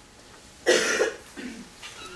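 A person coughs once, loudly, about two-thirds of a second in, followed by a quieter throat sound.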